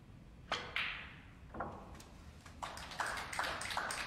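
Snooker shot: the cue tip strikes the cue ball with a sharp click, the cue ball clacks into a red about a quarter-second later, and a duller knock follows about a second after as the red goes to the pocket. From past halfway comes a run of quick, irregular light clicks.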